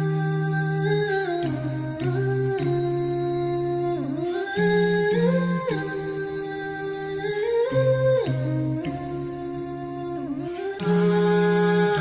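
Background music: a wordless hummed melody of long held notes that slide from one pitch to the next.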